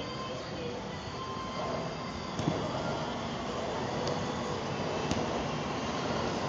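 A futsal ball kicked on artificial turf, three sharp knocks a second or two apart, over a steady rumbling noise.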